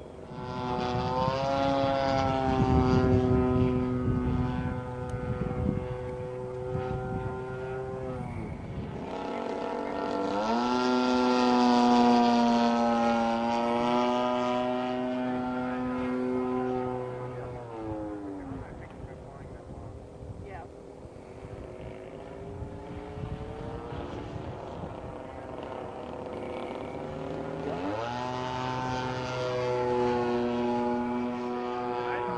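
Radio-controlled Edge 540 aerobatic model plane's engine and propeller running in flight, a steady buzzing note that swells and fades as the plane moves about the sky. The pitch drops sharply about nine seconds in and again around eighteen seconds, then the note is fainter for about ten seconds before climbing back near the end.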